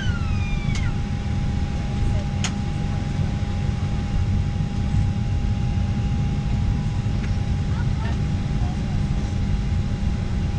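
Airliner cabin noise: a steady low rumble with a constant high thin tone running under it. A single sharp click about two and a half seconds in.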